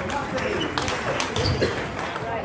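Table tennis balls clicking off bats and tables in nearby games: irregular sharp clicks over a background of voices.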